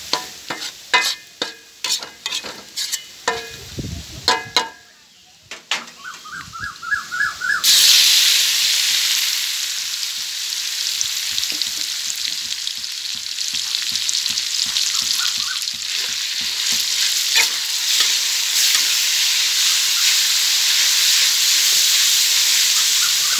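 A metal ladle scrapes and clacks against a large wok as garlic and dried chilies fry in a little oil. About eight seconds in, a sudden loud sizzle starts as marinated meat goes into the hot oil. It keeps sizzling steadily under the scraping of the ladle to the end.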